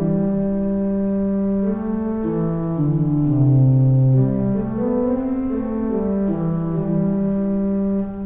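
Pipe organ, the 1897 Kimball rebuilt by Buzard, sounding sustained notes in a slow stepping line over held lower notes, each change coming every second or so. The notes sound the façade pipes, original 1897 pipes, showing that they are speaking pipes.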